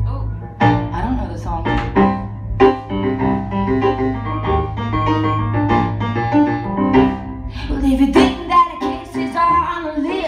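Live band playing an upbeat instrumental intro led by keyboard, with drum hits on the beat and a steady bass line underneath.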